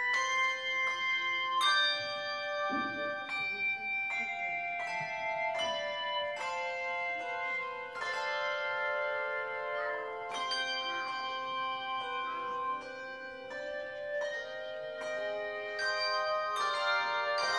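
A handbell choir playing a piece: handbells struck in succession, their notes ringing on and overlapping into chords.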